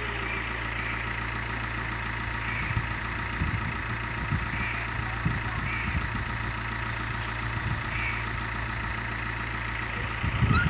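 A steady low mechanical hum, like an engine idling, with a few soft low thumps scattered through the middle.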